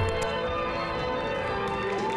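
Bell-like ringing chord from an edited intro sting: several steady tones that start together just after a whoosh and are held, fading only slightly.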